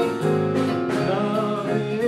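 Live band playing a song: electric guitars, saxophone, keyboard and drums together, with sustained melodic notes over a steady accompaniment.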